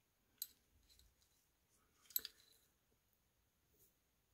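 Near silence: room tone with two faint short clicks, one about half a second in and one about two seconds in.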